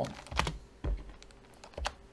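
Computer keyboard typing: a few separate keystrokes, spaced irregularly.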